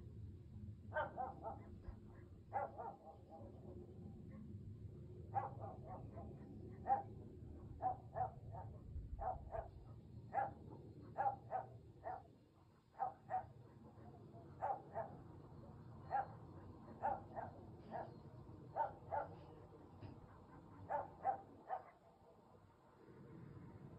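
A dog barking over and over in short runs of two or three barks, starting about a second in, with a steady low rumble underneath.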